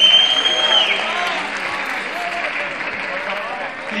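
Audience applauding a graduate crossing the stage, opening with a loud, shrill call held steady for about a second and dropping in pitch as it ends, with scattered shouts in the crowd.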